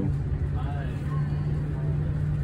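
Steady low drone of a tour bus's engine heard inside the cabin, with faint voices in the background.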